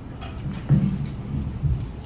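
Low thumps and rumbling picked up by the stage microphones as people stand up from stools and move about the microphone stands, with a heavy thump under a second in and a lighter one near the end.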